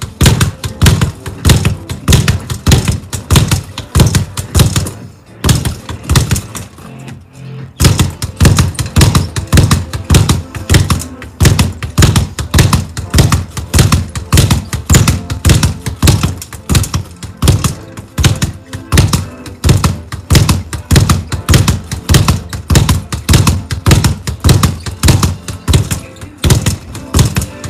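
Speed bag being punched in a fast, even rattle of strikes and rebounds off the rebound board, easing off briefly about five seconds in before picking up again. Music plays underneath.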